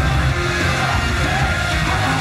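Loud heavy rock-style idol song with distorted guitar and heavy bass, heard live in the concert hall, with yelling over the music.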